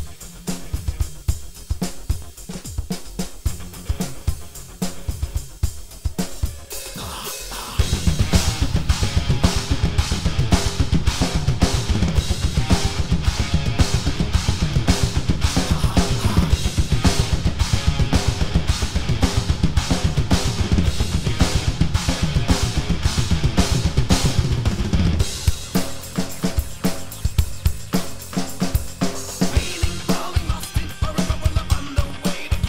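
Mapex acoustic drum kit with Istanbul cymbals played to a recorded metal song: kick, snare and cymbals. It builds to a loud, dense passage with rapid bass drum strokes from about eight seconds in, easing back about twenty-five seconds in.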